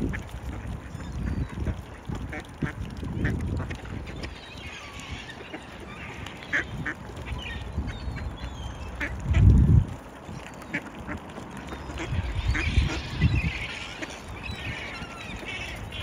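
Mallard ducks quacking at intervals on a frozen pond, with scattered short clicks. There are low muffled rumbles, the loudest about halfway through.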